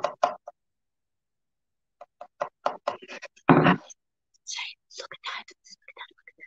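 Light knocks and clicks of thin wooden craft cutouts being handled on a table, with one louder bump about three and a half seconds in.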